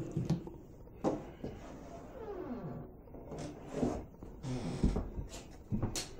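A small dog whining with short falling whimpers, among scattered knocks and rustles.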